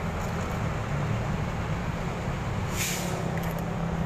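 A motor vehicle engine running steadily nearby, with a short burst of hiss about three seconds in.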